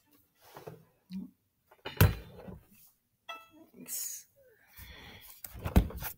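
Violin and bow being handled and settled into playing position: a few scattered soft knocks and rustles, with one brief pitched ring about three seconds in. No sustained bowed notes.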